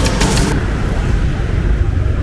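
Electronic music stops about half a second in, leaving steady street traffic and motorbike road noise with a low rumble, heard while riding along a city street.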